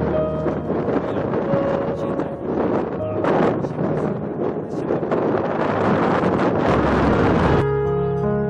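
Rushing wind noise on the microphone, gusting and rough, with soft background music running under it. The rushing cuts off suddenly near the end, leaving only the music.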